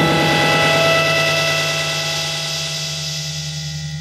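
A rock band's sustained chord: a dense, droning wall of held notes that slowly fades away.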